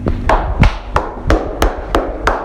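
Hand claps in a quick, steady rhythm, about three sharp claps a second.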